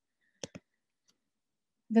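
Two quick clicks close together, about half a second in, from a computer mouse advancing the presentation slide.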